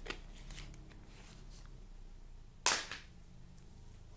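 A drink can's pull tab is snapped open: one sharp crack with a short fizz trailing off, a little past halfway through. A few light clicks come before it.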